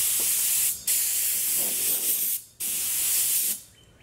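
Air blow gun on the hose of a Kobalt 8-gallon air compressor releasing compressed air in three hissing blasts with short breaks between them, the regulator turned all the way up and giving good pressure. The last blast stops shortly before the end.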